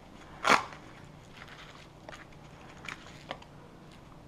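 A single sharp knock about half a second in, then a few faint clicks and taps: close handling noise of objects held near the microphone.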